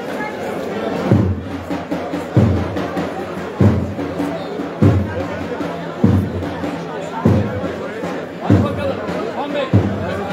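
A slow, steady bass drum beat, one stroke about every second and a quarter, over the chatter of a dense street crowd.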